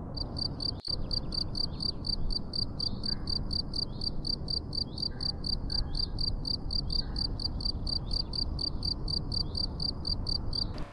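Crickets chirping steadily, about three to four high chirps a second, over a low, even background rumble of night ambience.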